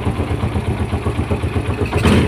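2011 Yamaha Jupiter Z Robot's single-cylinder four-stroke engine idling steadily with an even, pulsing beat and a rough rattle ('gredek-gredek') in it, which the owner puts down to the cam chain tensioner, a crankshaft bearing or the clutch shoes.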